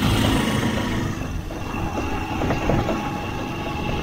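Motorcycle tricycle's small engine running with steady road rumble, heard from inside its cramped sidecar while riding.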